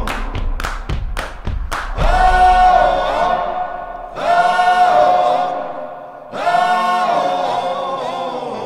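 The close of a song: after a quick run of drum hits in the first two seconds, sung vocals hold three long, steady notes one after another.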